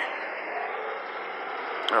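Steady outdoor street background noise, an even hiss-like rush, with a single sharp click just before the end.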